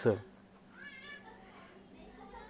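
A faint, short high-pitched cry about a second in.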